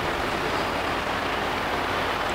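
Steady background hiss with no pitch or rhythm, at an even level throughout.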